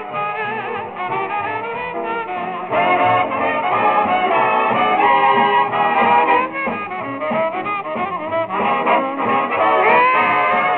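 Swing big band playing an instrumental from a 1945 recording, with trumpets and trombones to the fore; the band gets louder about three seconds in.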